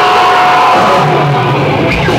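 Loud live metal band playing with distorted electric guitars: a held guitar note at the start gives way to a dense, chugging riff with a bass line coming in about a second in.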